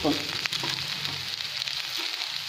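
Sliced okra frying in oil in a kadai, a steady sizzle, with a faint click about half a second in.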